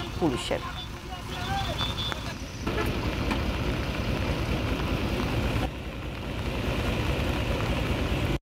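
Outdoor ambience dominated by a vehicle engine running steadily, with faint voices in the first two seconds or so.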